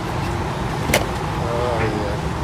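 Street ambience: a steady low rumble of road traffic, with one sharp click about a second in.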